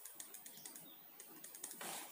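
Faint, irregular clicks of a pen tapping and marking on paper, with a short rustle near the end.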